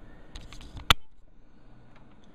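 Handling noise: a few light clicks, then one sharp click or knock about a second in.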